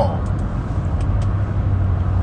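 Car cabin noise heard from inside the vehicle: a steady low hum under an even rush of noise, with a few faint ticks.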